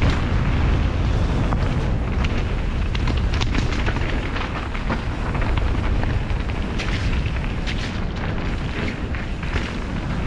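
Wind buffeting a helmet-mounted camera's microphone on a mountain bike descent, a loud steady low rumble, with the tyres crunching over gravel and many short clicks and rattles from the bike.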